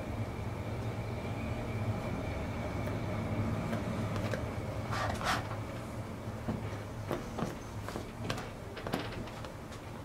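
Faint scratchy strokes of a paintbrush on a stretched canvas, with a few short scrapes about five seconds in and scattered light ticks later, over a steady low room hum.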